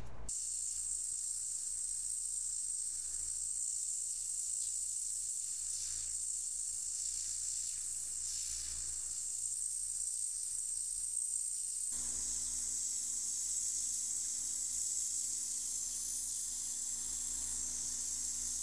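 Hot air rework station blowing with a steady hiss while the NAND flash chip is desoldered from the flash drive's circuit board. About two-thirds of the way through, the hiss changes abruptly and a low steady hum joins it.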